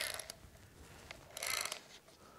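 Spinning fishing reel clicking rapidly in two short bursts, about a second and a half apart, with a fish hooked on the bending rod.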